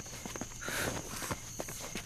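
Scattered light footsteps on stone paving and the soft rustle of a cloak being handled, over a faint, steady, high-pitched tone.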